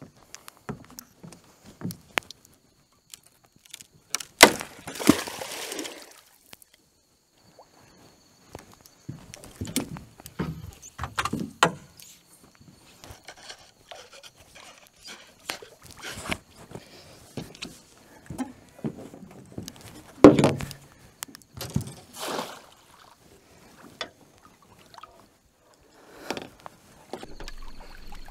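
Water splashing and sloshing with knocks and clatter against the boat as a hooked barramundi is hand-lined in and scooped up in a landing net. The sounds are irregular, with the loudest bursts about four seconds in and again about twenty seconds in.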